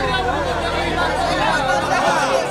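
Crowd chatter: several men talking and calling out at once, over a low steady hum that fades out near the end.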